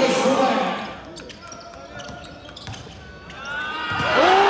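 Live courtside sound of a basketball game: a ball bouncing on the hardwood court with sharp taps, under players' and spectators' voices, which are loudest in the first second and pick up again near the end.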